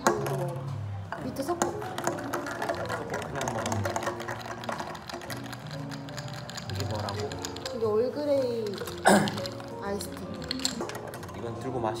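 Metal bar spoon and straws stirring ice in drinking glasses: rapid, irregular clinking of ice against glass. One louder knock a little past nine seconds in.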